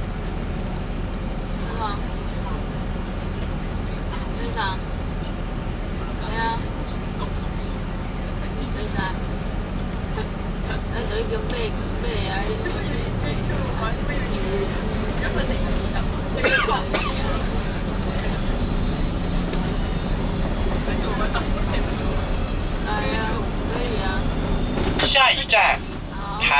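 Steady low drone of an MCI coach bus's engine and running gear heard inside the cabin as it crawls and then moves along in city traffic, with indistinct voices over it. The drone cuts out briefly near the end.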